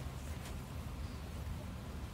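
Background room tone: a steady low rumble with a faint hiss, and one faint tick about half a second in.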